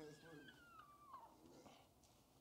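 Near silence: room tone, with a faint high tone that falls in pitch over about the first second.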